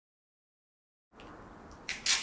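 Complete silence for about a second, then faint steady background hiss, with one short click just before the end.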